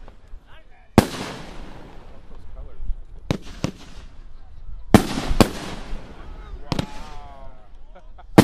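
A consumer firework cake firing aerial shots: about six sharp bangs at uneven intervals, the loudest about a second in and again about five seconds in, each trailing off in a crackle. A person's voice is heard briefly near the end.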